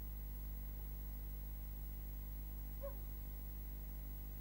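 Steady low electrical hum and hiss of an old broadcast tape recording, with one brief faint chirp about three seconds in.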